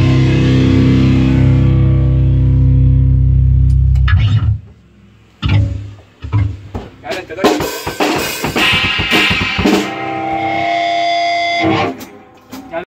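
A rock band's last chord ringing out on distorted electric guitars and bass, held steady, then cut off about four seconds in. After it come scattered knocks and voices, with a guitar tone sounding again near the end.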